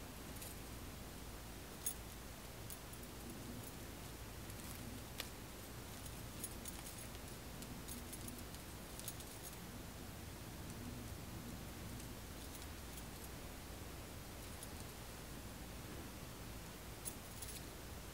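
Fingers picking apart a tangled, twisted strand of synthetic doll hair on a Barbie styling head: a faint, soft rustling of the hair, with a few sharp little clinks from a metal bracelet on the working wrist.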